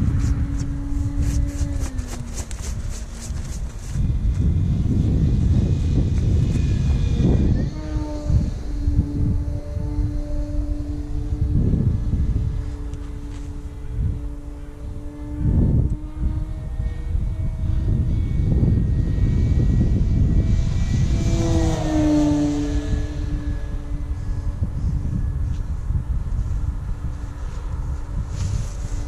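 Electric motor and propeller of an E-flite Carbon-Z Cub SS radio-controlled plane in flight: a steady drone that drops in pitch as the plane passes, about 8 seconds in and again about 22 seconds in. Gusts of wind on the microphone sound underneath.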